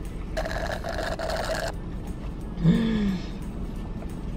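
An icy blended frappuccino is sucked up through a drinking straw for about a second, making a rough, even sucking noise. This is followed by a short hummed "mm" that falls in pitch, a reaction of pleasure at the taste.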